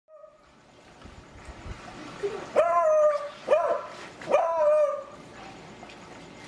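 Beagle barking three times in quick succession, each bark drawn out and dropping slightly in pitch, starting a little before halfway through.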